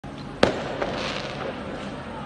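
A sharp, loud bang about half a second in, with a short echo, then a fainter bang, over a steady background noise of the street.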